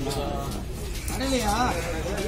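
Indistinct voices talking in the background, one rising and falling in pitch about one and a half seconds in; no knife strokes are heard.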